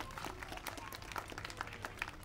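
Light, scattered applause from a small standing crowd: many separate, irregular hand claps.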